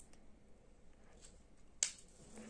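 A hand takes hold of a small potted succulent, making one sharp click near the end, with a few faint ticks of handling before it.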